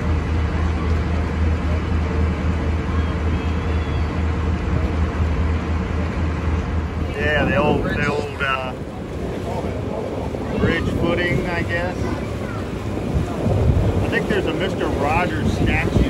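Shuttle riverboat under way: a steady low engine hum with wind on the microphone and water wash. Voices of people aboard come in about halfway and again near the end.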